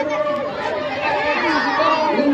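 Crowd of marchers in a walking procession, many voices talking over one another in a steady hubbub.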